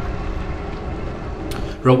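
Steady low outdoor rumble, wind and distant noise on the microphone of a camera moving along a park road. A man's voice starts near the end.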